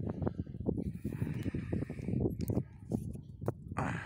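Wind buffeting the phone's microphone, an uneven low rumble that keeps rising and falling in gusts.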